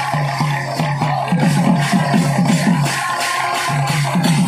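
Live kirtan music led by a two-headed barrel drum played in rapid strokes, its bass notes gliding downward, with jingling metal percussion over a steady low drone; the drumming gets busier about a second in.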